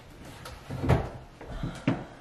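A few knocks and clunks as a container is taken down from a kitchen wall-cabinet shelf, the loudest about a second in and two lighter ones near the end.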